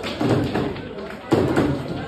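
Table football in play: hard knocks of the ball being struck by the plastic players and of rods hitting the table, sharpest at the start and about a second and a half in, with people talking around the table.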